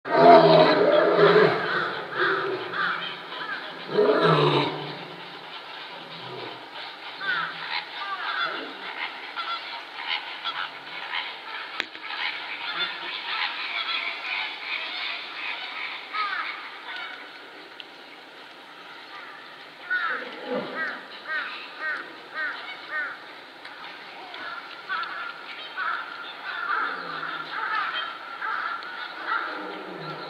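Male lion roaring in a bout of deep calls, loudest in the first few seconds, with another call about four seconds in and again about twenty seconds in.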